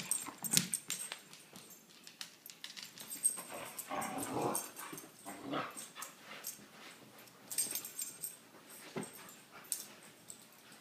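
Two dogs play-fighting over a rope toy on a couch: scuffling on the cushions with dog vocalizations, loudest and most continuous about four seconds in.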